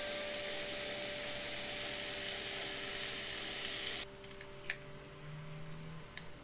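Minced beef, mushrooms and chopped vegetables sizzling as they stir-fry in a frying pan. The sizzle cuts off suddenly about four seconds in, and a few light clicks follow.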